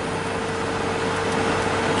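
Steady road and engine noise inside a moving car's cabin, with a constant low hum under it.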